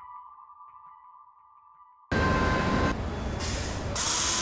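A soft electronic music tone fading away, then about two seconds in a loud, steady rush of heavy machinery noise starts abruptly, fitting a backhoe loader running on site.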